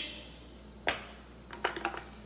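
Small kitchen clinks and taps: one sharp click about a second in, then a quick run of lighter clicks near the end, as seasoning containers and utensils are handled.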